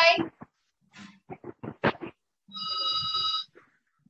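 A few faint clicks and taps, then a steady electronic ringing tone made of several high pitches held together for about a second.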